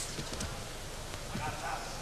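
A few dull thuds of judoka's bare feet stepping on tatami mats during standing grip fighting, over a steady murmur of arena crowd noise.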